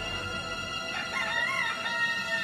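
A rooster crows once, about a second in, a single wavering call that rises and falls, over steady background music.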